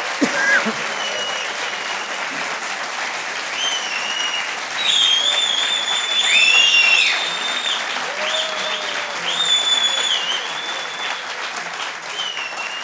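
A studio audience applauding steadily, with high whistled notes over the clapping that are loudest midway through.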